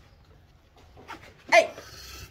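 A single short, loud vocal cry about one and a half seconds in, after a quiet stretch.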